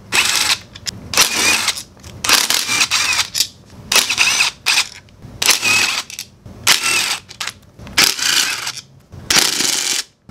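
Cordless DeWalt 20V driver backing out the CVT cover bolts, in about nine short bursts roughly a second apart, each with a whining motor pitch.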